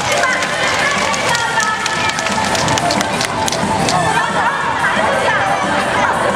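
Spectators in the audience chattering, with music playing over the loudspeakers.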